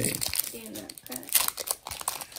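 Foil wrapper of a Pokémon Lost Origin booster pack crinkling in quick crackles as it is opened by hand.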